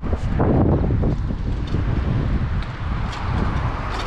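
Wind buffeting the microphone of a camera carried on a moving bicycle, a steady low rumble with faint road noise under it.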